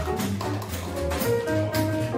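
Jazz trio playing: a piano solo over upright double bass and drums, with cymbal strokes keeping time about twice a second.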